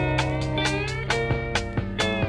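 Recorded folk music with plucked guitar notes, some held notes sliding in pitch.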